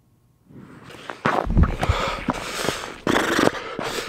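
Snow crunching underfoot and the knocks and rubbing of a handheld camera being grabbed and carried, beginning about half a second in and getting loud about a second in.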